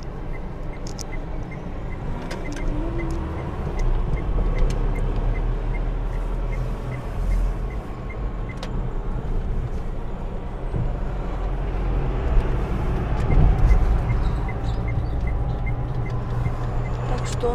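Inside a car's cabin: engine and tyre noise from a car driving on a city road, a steady low rumble that swells twice. A light ticking at about two a second runs through much of it and pauses for a few seconds midway.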